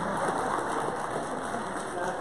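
Congregation applauding in a large room: a dense, even patter of many hands clapping, with a few voices under it.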